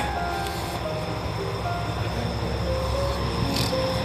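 Steady low rumble of a diesel railcar idling at the platform, with faint music running over it.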